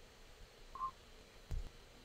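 A brief electronic beep, a short two-step tone about three-quarters of a second in, then a single low thump about a second and a half in, over faint room tone.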